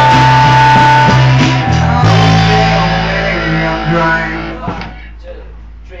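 Live rock band playing guitar chords, with a held high note about the first second. The chords then ring out and fade away near the end, leaving a short lull.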